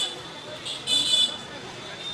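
Street traffic: short high-pitched horn toots, a couple of them about a second in, over background voices and road noise.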